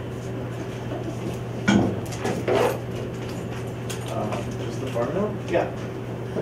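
Classroom background with a steady low hum, a single sharp knock a little under two seconds in, and low, scattered voices.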